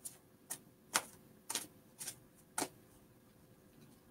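A deck of oracle cards shuffled by hand: six sharp slaps of the cards, about two a second, then they stop.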